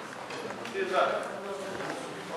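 Indistinct murmur of several voices in a large hall, with a short louder stretch of speech about a second in.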